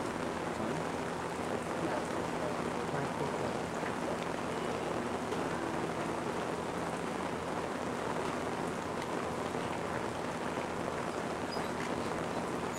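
Steady, even hiss-like noise with a faint low hum underneath; no one is speaking.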